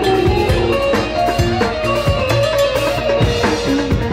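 Loud live Bedouin-style party music through the stage sound system: a melodic instrument line with gliding, bending notes over a steady drum beat, played without vocals.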